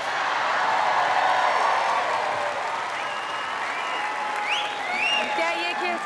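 Large audience laughing and applauding, loudest in the first two seconds, with a few rising whoops and shouts over the clapping in the second half.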